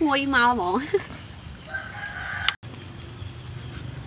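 A rooster crows once, briefly and steadily, and is cut off suddenly a little past halfway. A low, steady background noise follows.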